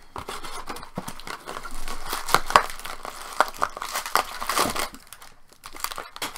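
Card packaging being handled: a cardboard Topps baseball card box torn open at its top, with plastic wrap and foil card packs crinkling, in an uneven run of rustles and sharp snaps.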